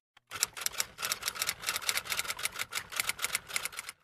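A rapid, even run of sharp clicks, about seven a second, that stops suddenly near the end.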